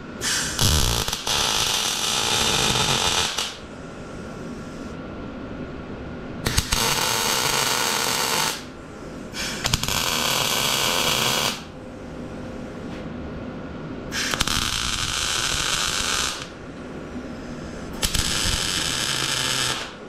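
Wire-feed (MIG) welder laying five short weld runs, each a crackling, sizzling arc of two to three seconds, welding diamond-plate pieces into the lid. A lower steady hum fills the gaps between runs.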